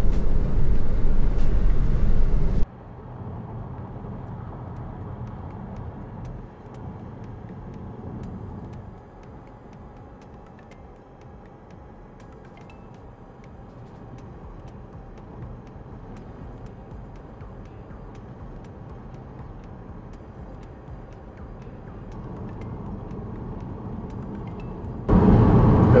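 Road and engine noise of a moving car heard from inside the cabin: a loud steady rumble that drops suddenly about three seconds in to a much fainter, duller rumble, and comes back loud about a second before the end.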